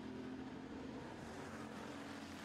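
Street stock race car engines running in a steady drone as the cars circle the dirt track.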